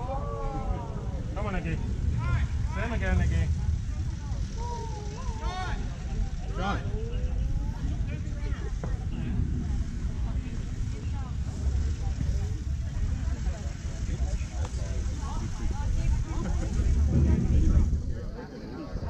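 Voices calling out and chanting across a baseball field, mostly in the first several seconds, over a steady low rumble of wind on the microphone that grows stronger near the end.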